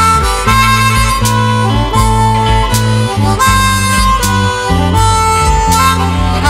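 Instrumental slow blues played by a band: a lead line of long held notes over a walking bass line and a steady beat.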